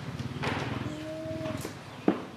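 A cow mooing: one long low call that stops about three-quarters of the way through.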